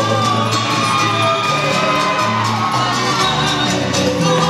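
Live cueca music from a band with harp and guitars, with shouts and whoops from the crowd over it.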